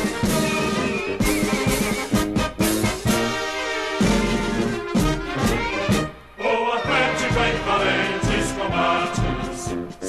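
Instrumental introduction of a football club anthem, played by brass and orchestra. The music dips briefly about six seconds in, then comes back fuller.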